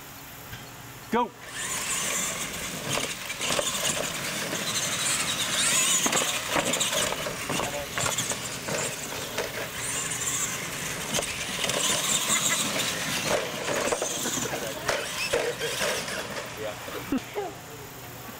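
Two radio-controlled monster trucks racing on dirt, their electric motors and gearboxes whining high and tires churning the dirt. The sound starts about a second in, just after the start call, and the whine swells and drops several times before it fades near the end.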